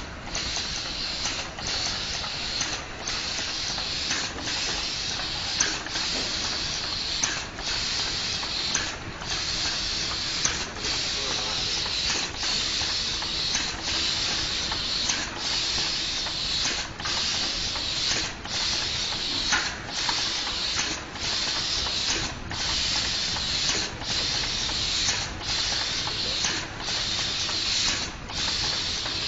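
Steady hiss of compressed air from a delta pick-and-place robot's pneumatic gripper, broken by a short dip about every second and a half.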